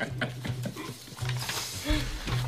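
Men sniggering: stifled chuckles in short, irregular spurts through the nose and mouth, over soft background music.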